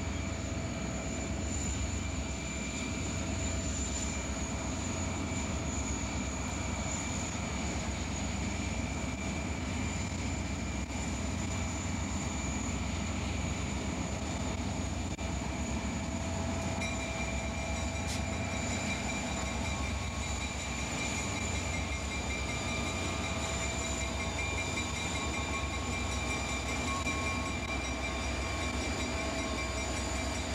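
Several Soo Line diesel freight locomotives drawing near and passing, a steady engine rumble with a thin high whine over it. More high whining tones join and grow stronger a little past halfway as the units come close.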